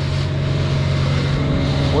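Outboard motor running steadily as the boat trolls under way, with water rushing and splashing along the hull.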